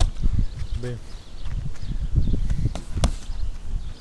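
Kicks and boxing-glove punches landing on a homemade punching bag of stacked car tyres: a run of dull, irregular thumps with a few sharper slaps.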